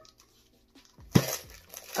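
Near silence, then about a second in a short knock and a brief rustle as a pink cylindrical brush-set tube is handled and its lid worked off.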